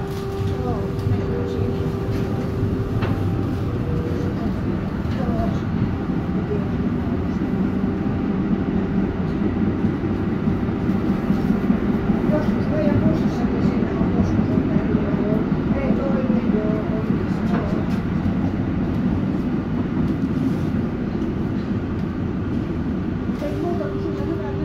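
Interior running noise of a 1987 Valmet-Strömberg MLNRV2 articulated tram under way: a steady rolling rumble of wheels on rails and running gear. A steady hum sounds at first, fades as the rumble grows louder through the middle, and returns near the end.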